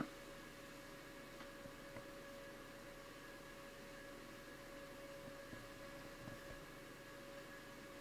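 Near silence: quiet room tone with a faint steady hum.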